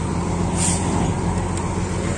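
Road roller's engine running steadily while it compacts fresh asphalt, with a brief hiss about half a second in.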